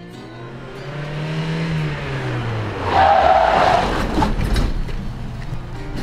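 A car engine pitch rises and then drops, as if a car is speeding past, and about three seconds in the tires squeal loudly for about a second. A low engine rumble follows.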